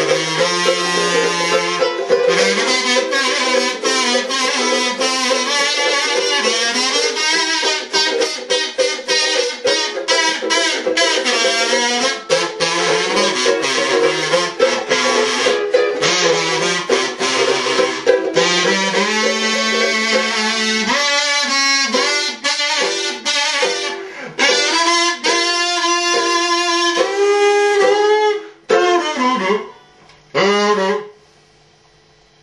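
Regal Wendell Hall ukulele strummed in a steady rhythm while a Wurlitzer gramophone-shaped kazoo buzzes the tune over it. The playing breaks off near the end.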